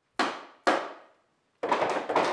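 Long wooden poles knocked on a wooden floor: two single knocks about half a second apart, then many struck together in a clattering burst near the end.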